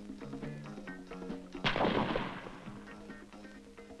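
A single shot from a Dragunov SVD sniper rifle about one and a half seconds in, a sharp crack with a tail that fades over about a second, over background music.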